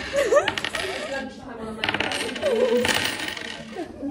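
Light metallic jingling and clinking that comes and goes, dropping away for a moment about a second and a half in.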